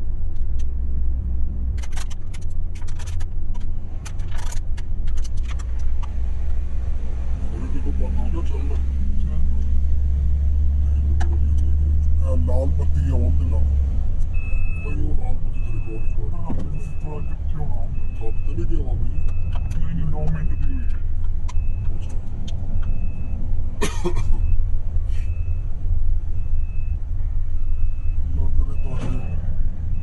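Inside a moving car: a steady low rumble of engine and tyre noise, heaviest in the first half. From about halfway a short, high electronic beep repeats roughly one and a half times a second.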